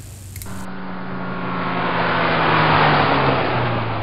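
Car engine sound effect: an engine running and revving. It starts about half a second in and swells louder over the next two seconds.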